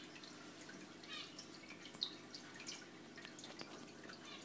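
Faint trickling and dripping of aquarium water, with a few soft ticks.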